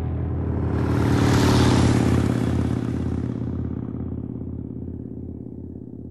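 Motorcycle engine sound cut in abruptly. A rush of noise swells over the first two seconds and dies down, and the engine keeps running with a low pulsing beat about three times a second while it slowly fades.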